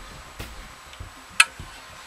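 Small clicks from handling a metal fuel tank and carburetor, with one sharp metallic click that rings briefly about one and a half seconds in, as the tank is fitted to the carburetor.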